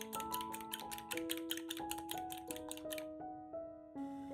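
Fork whisking eggs and milk in a glass bowl: a fast, even run of light clicks, about six a second, that stops about three seconds in. Quiet background music with plucked, piano-like notes plays throughout.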